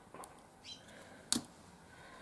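Faint bird chirps in the background, and one sharp click about one and a half seconds in as a pair of jewellery pliers is laid down on the table.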